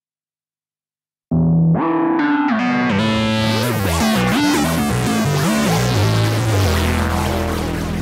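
Nord Lead 4 virtual analog synthesizer playing a riff of moving notes over a bass line, starting suddenly about a second in. From about three seconds in the tone turns much brighter and harsher as distortion is brought in through an Impulse Morph, settling onto a held low note near the end.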